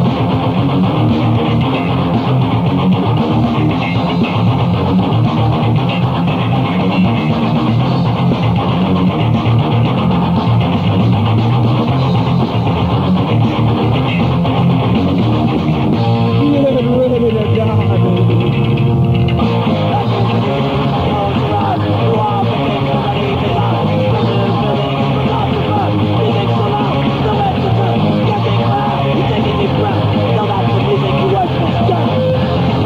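Thrashcore band playing live: loud, fast, distorted electric guitars, bass and drums, heard off a radio broadcast with the top end cut off. A passage of sliding notes comes about halfway through.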